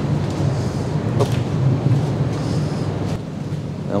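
Steady low drone of machinery on a yacht transporter ship under way, with a faint click about a second in.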